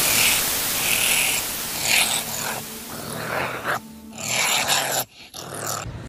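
Rough static hiss from a glitch effect, breaking up and stuttering in the last two seconds with brief sudden dropouts.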